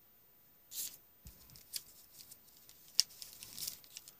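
Paper rustling and crinkling in short bursts as a paper insert and envelope are handled and a coin proof set is drawn out of the envelope, with small ticks and one sharp tap about three seconds in.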